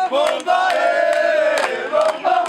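A group of voices singing or chanting together to hand clapping, with one long held note through the middle.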